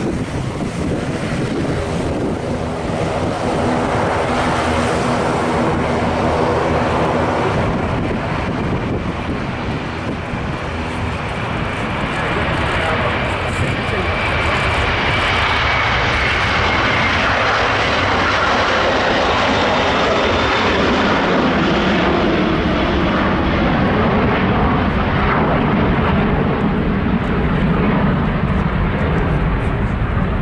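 Airbus A330-200 twin jet engines at takeoff thrust as the airliner rolls, lifts off and climbs away. It is a loud, steady jet noise with a faint high whine near the middle, growing deeper toward the end as the aircraft climbs out.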